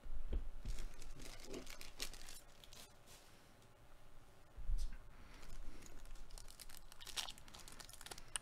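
A baseball card pack wrapper being torn open and crinkled, in two spells of rustling and tearing with a short lull between them.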